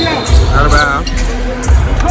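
Basketball game sounds in a gym: music with a heavy bass line playing loudly over the court, the ball bouncing on the hardwood and a brief sneaker squeak about half a second in.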